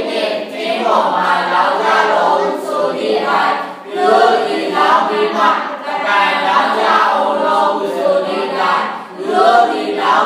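A church congregation singing together in sustained phrases, with short breaks between phrases about four and nine seconds in.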